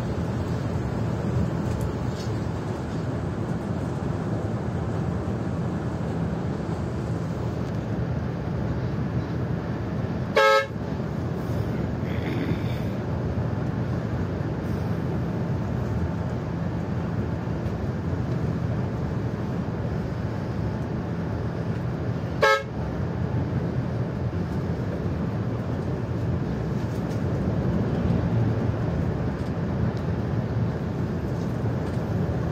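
Steady engine and road drone heard from inside a moving coach's cabin, with two short horn blasts about twelve seconds apart, the first about a third of the way in and the second about three quarters of the way in.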